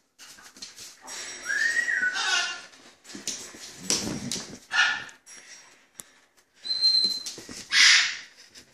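Australian Shepherd whining and giving short, sharp yips during play, in several separate bursts; the loudest comes right at the end.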